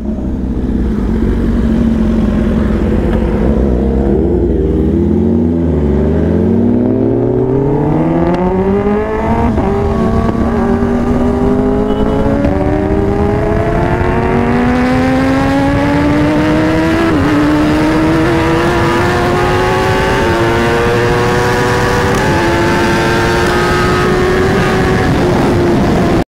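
Kawasaki ZX-10R inline-four engine from the rider's seat: the revs fall away over the first few seconds, then the bike accelerates hard through the gears, the engine note climbing with a short dip at each upshift. Wind rush builds as the speed climbs.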